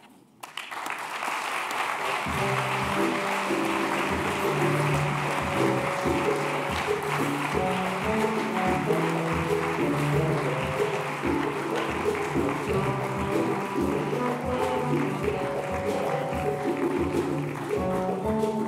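Audience applauding, with music starting about two seconds in and playing over the clapping.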